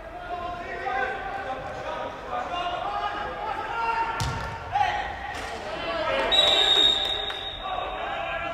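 Players' voices calling on an indoor walking football pitch, with one ball kick about four seconds in, then a referee's whistle giving one long steady blast over the last two seconds.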